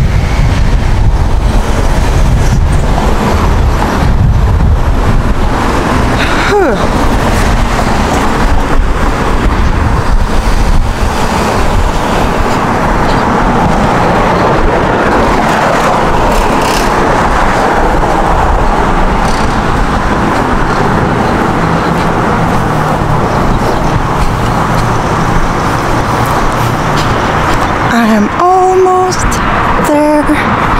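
Road traffic on a busy city street: a steady wash of passing cars with a heavy low rumble, and a brief rising tone about six seconds in.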